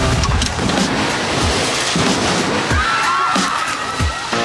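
Music with a heavy, regular beat under a dense noisy wash, with a short gliding tone near the end.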